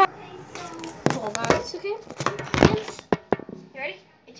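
Several knocks and bumps from a phone being handled and set down on a counter, mixed with a child's voice.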